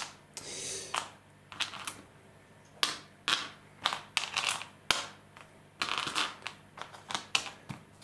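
Small six-sided dice clicking together as a hand picks them up one or a few at a time off a gaming mat: a dozen or so sharp, separate clicks, coming faster near the end.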